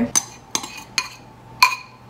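Metal spoon clinking and scraping against a ceramic bowl as it is emptied into a mixing bowl: four short clinks about half a second apart, the last one loudest with a brief ring.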